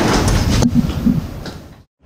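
Lobby field sound: a steady rushing noise with one sharp clack a little over half a second in, then fading away to silence near the end.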